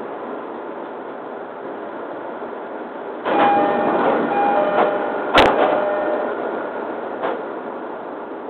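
JR E231-series commuter train's door chime, a two-note electronic tone sounding several times, over a rush of air as the doors work at a station stop. A single sharp knock comes about halfway through, and a steady hum from the stopped train runs underneath.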